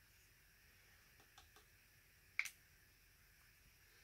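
Near silence broken by a few faint clicks and one sharper click about two and a half seconds in: small plastic paint cups being handled on the worktable.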